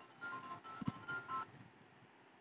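Faint electronic keypad beeps from a phone: a quick run of about five short beeps, each two tones sounding together and differing slightly in pitch, over the first second and a half.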